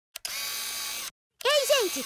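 A short click, then a steady buzzy electronic tone lasting just under a second that cuts off suddenly: a cartoon sound effect. After a brief silence a girl's voice starts speaking.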